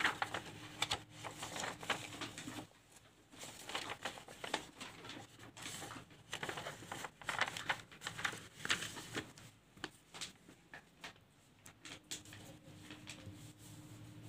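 Paper rustling and crinkling as a sheet is handled and shifted about, in irregular bursts with scattered light taps and clicks.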